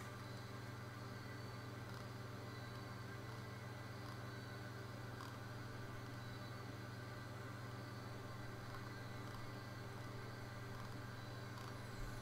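Steady low electrical hum with faint even hiss: the background noise of a home recording setup with nothing else going on.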